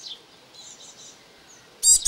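Small garden birds chirping faintly, then a louder burst of high, repeated bird calls near the end.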